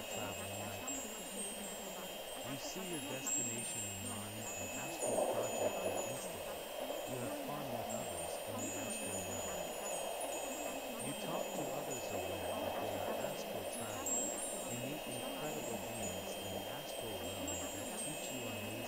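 Wind chimes tinkling continuously in short, high, scattered notes over a low, muffled background layer: an ambient bed for a subliminal track.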